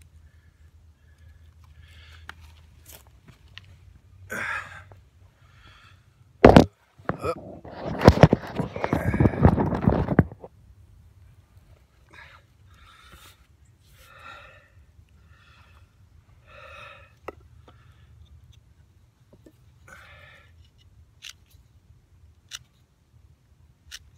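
A person breathing hard in short breaths and sighs throughout. About six seconds in there is a sharp knock, then about three seconds of loud scraping and rustling, and near the end a few light clicks.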